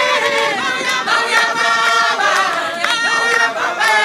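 A congregation singing a hymn together a cappella, many voices holding long notes in harmony with no instruments.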